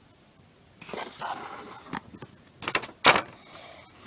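A short breathy laugh, then hands handling a small polymer clay miniature over a table, with a few sharp knocks about three seconds in, the last and loudest of them the loudest sound here.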